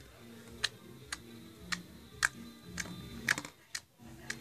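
Sharp, irregular clicks and pops, about six in four seconds, from a finger poking and pressing blue slime in a plastic container and popping its air bubbles.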